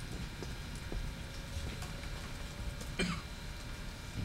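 A single cough about three seconds in, over a low steady room hum with a few faint taps.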